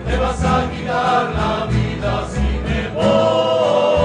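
A rondalla playing live: many strummed acoustic guitars and a double bass in an even rhythm, with a group of male voices singing. About three seconds in, a long held note with a gentle vibrato comes in over the guitars.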